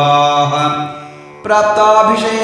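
A man chanting Sanskrit devotional verses in a steady recitation tone: a held syllable fades out about halfway through, there is a brief pause, and the chant resumes near the end.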